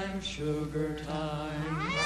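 Female vocal trio singing a soft, sustained close-harmony passage in held notes, the voices sliding upward together near the end.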